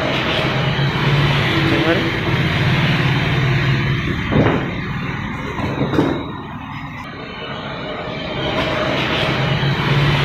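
Steady machinery hum in a woodworking shop, with two sharp knocks about four and a half and six seconds in.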